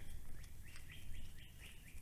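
A bird calling faintly: a run of short, falling chirps, about four a second.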